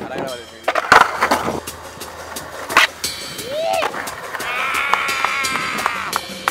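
Skateboard rolling on a concrete park, with sharp clacks of the board hitting the ground about a second in and again near three seconds in. A short shout follows the second clack, and a long held pitched sound fills the last second and a half.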